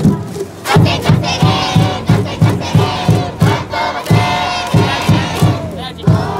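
High-school baseball cheering section shouting a chant in unison over a steady drum beat, about three beats a second, starting shortly after a brief lull.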